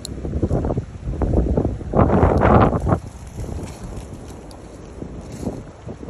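Wind buffeting the phone's microphone in uneven gusts, a low rumble, with the strongest gust about two seconds in lasting about a second.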